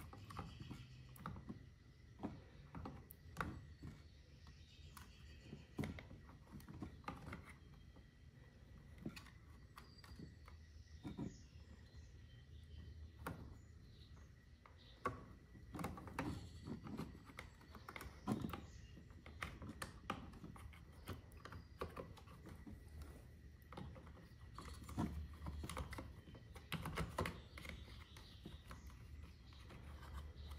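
Faint, irregular clicks and rustles of hands working wires and plastic parts into the opened control head of a trolling motor, over a low steady background hum.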